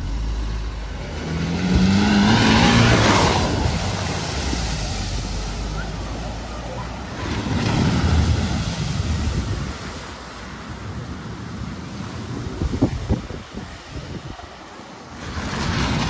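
A hatchback drives into a flooded ford, its engine revving with a rising note about two seconds in. Its wheels throw up a rush of spraying water around eight seconds in. Over steady rushing floodwater, a second car starts into the water near the end.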